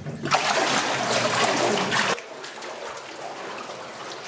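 Water splashing as a person wades through the spring water in a narrow rock-cut tunnel. The splashing cuts off sharply about two seconds in, leaving a quieter steady rush of water.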